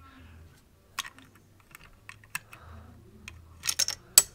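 Plastic Lego bricks of a homemade candy machine clicking and clacking as it is handled: scattered sharp taps from about a second in, then a quick cluster of louder clicks near the end.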